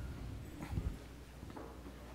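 Faint hall ambience of an audience getting up and moving about, with a couple of soft knocks and shuffles just before a second in.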